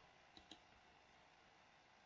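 Near silence with two faint computer-mouse clicks, about a third and a half second in.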